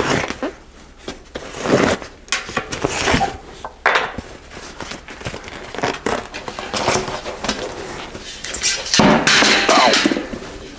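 Knobby bicycle tire being worked off its rim by hand: irregular rubber scraping and rubbing against the rim as the stuck bead is pulled free, with a louder burst of noise near the end.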